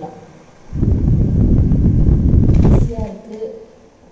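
Air from a rechargeable table fan buffeting the microphone: a loud rumbling gust that starts about a second in and lasts about two seconds.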